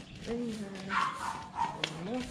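A dog barking amid small children's voices, with a sharp click shortly before the end.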